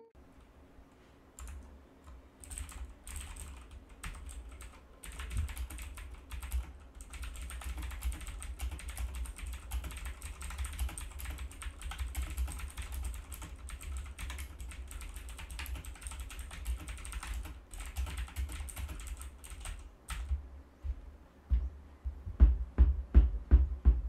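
Fast, continuous typing on a backlit computer keyboard, picked up raw by a USB condenser microphone standing beside it. The dense key clicks carry a low thud beneath them. They start about a second and a half in and stop about two seconds before the end.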